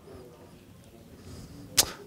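Quiet pause in a talk: faint room tone with a low murmur, then a short sharp hiss near the end, a breath taken into the presenter's microphone before he speaks again.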